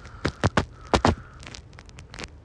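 Several short, sharp clicks or taps in quick, irregular succession, the loudest about a second in.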